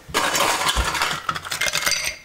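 Ice cubes scooped from an ice bucket and tipped into a glass mixing glass: a dense rattling clatter of ice on metal and glass that starts a moment in.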